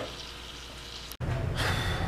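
Faint room tone cut off abruptly about a second in, then a steady low hum of a room and a man's sigh near the end.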